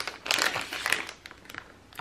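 Clear plastic bag of wax melts crinkling as it is handled, loudest in the first second and fading toward the end.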